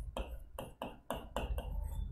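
Marker pen writing on a whiteboard: a quick run of short, faint squeaks, one for each stroke of the letters.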